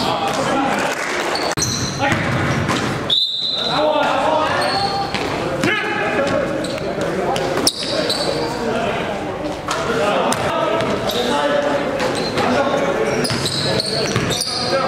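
A basketball bouncing on a gym floor during play, with players' voices and shouts, all echoing in a large hall.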